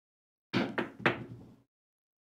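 A pair of craps dice thrown onto the table: three sharp knocks about a quarter second apart as they land and bounce, dying away in a brief rattle. The toss may have been a little hard.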